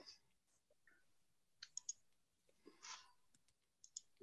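Near silence broken by a few faint clicks, a cluster about a second and a half in and another near the end: computer mouse clicks as a file is being opened on screen. A short soft hiss falls between them.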